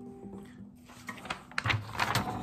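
Acoustic guitar notes ringing out and fading away within the first half second. Then faint handling noises and a few sharp rustles of paper near the end as a sheet is picked up.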